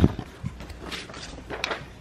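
The camera being bumped and handled up close: a dull thump at the start, then a few lighter knocks.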